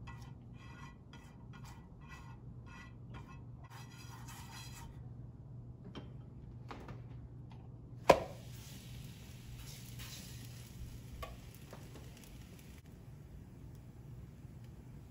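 A silicone brush spreading oil over the bottom of a non-stick frying pan in quick, even strokes, about two and a half a second, for the first five seconds. About eight seconds in, a sharp knock against the pan as the rolled flatbread dough goes in, then a faint sizzle as the dough starts to cook in the hot oil.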